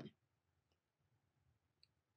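Near silence, with a faint short click about a second and three-quarters in and a still fainter one before it.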